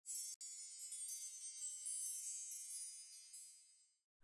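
Soft, high-pitched chimes ringing, many struck notes overlapping and dying away shortly before the end.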